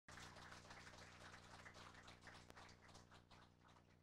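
Near silence: faint, scattered audience clapping dying away over a low steady electrical hum.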